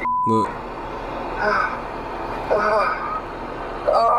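A short steady censor bleep at the very start, then the low hum of a car cabin with brief, faint snatches of voice.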